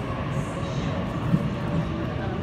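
Sydney Trains Tangara electric train approaching along the platform, a steady low rumble.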